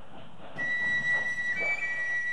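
Background flute music starts about half a second in: a long held high note that steps up to a higher note.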